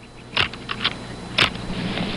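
Camera shutter clicking several times: two sharper clicks about a second apart, with fainter clicks between them.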